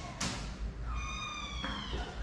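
A kitten meowing once, a high, thin call lasting under a second that falls slightly in pitch, about a second in. Near the start there is a brief rustling noise.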